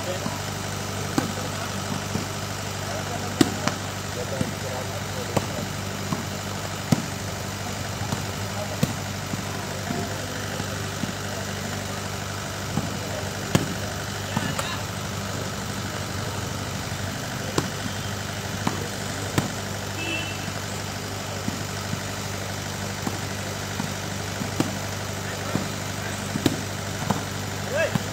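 Volleyball hits during a rally, a sharp smack every second or two. Under them runs a steady low engine hum.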